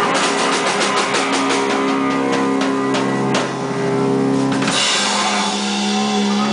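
Live doom metal band: distorted electric guitar and drum kit playing loud. A fast run of drum hits fills the first three seconds or so, then long held guitar notes ring out, and a cymbal crash starts near the end.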